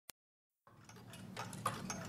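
The song's intro fading in: an even mechanical ticking, about four clicks a second with a stronger one each second, over a low hum. A single faint click comes at the very start, then a moment of silence.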